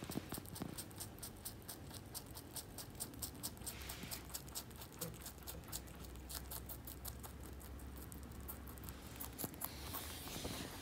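A Netherland Dwarf rabbit chewing a bok choy stalk: rapid, crisp crunches, several a second.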